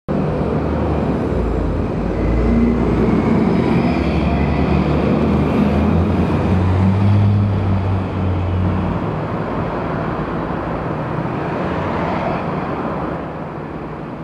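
Road traffic with a vehicle engine running: a continuous rumble with a low engine hum that is strongest for the first nine seconds, then eases into a slightly quieter traffic noise.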